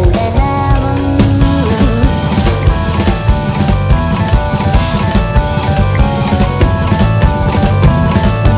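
Live band music led by a busy drum kit, with bass drum and snare hits, under held keyboard notes and lines.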